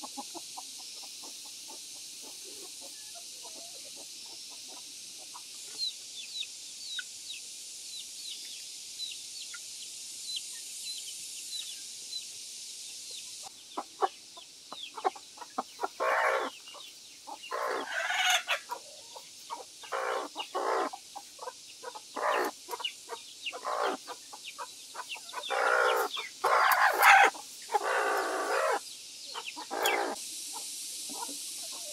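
A hen sitting on eggs in a basket nest clucks and squawks loudly and repeatedly in protest as she is reached under and lifted off her eggs, the calls starting about halfway through and growing loudest near the end. Faint high chirps are heard earlier.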